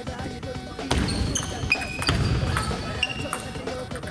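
Table tennis ball clicking as it bounces, sharp hollow taps against a busy sports-hall background.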